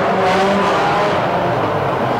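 Engines of a pack of banger racing cars running steadily as they race round an oval track.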